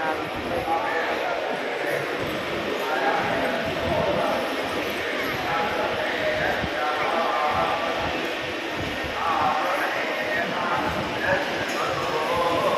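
Crowd chatter: many people talking at once with no single clear voice, mixed with scattered short low thuds.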